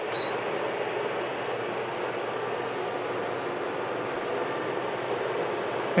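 One short high beep from an induction cooktop's touch button just after the start. Under it runs a steady whirring hiss from fan heaters and a pan of water boiling on the cooktop, all running flat out on a battery-powered inverter.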